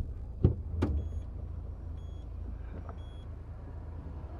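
Car engine idling, heard from inside the cabin as a steady low rumble. There are two light knocks about half a second and a second in, and faint short high beeps about once a second after that.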